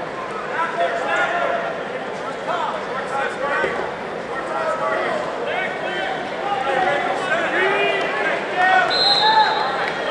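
Crowd of spectators in a gym, many voices shouting and calling out over one another, with a brief high steady tone about nine seconds in.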